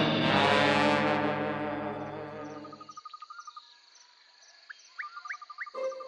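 A held musical chord fades away over the first few seconds, leaving insects chirping in a steady pulsing trill, with a few short rising bird tweets near the end.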